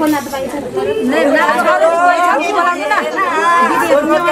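Lively group chatter of women's voices, several people talking over one another at once.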